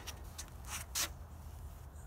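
Quiet low background rumble with two short soft rustles, close together near the middle.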